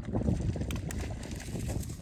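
Wind buffeting the microphone: an uneven low rumble, with a couple of faint clicks about a second in.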